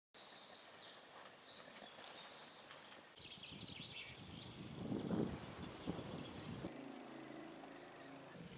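Wild birds chirping and singing faintly over outdoor background noise, the background changing abruptly about three seconds in.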